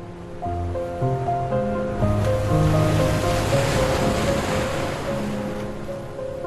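Slow, soft instrumental music of held notes changing chord, with the wash of an ocean wave swelling up about two seconds in and fading away near the end.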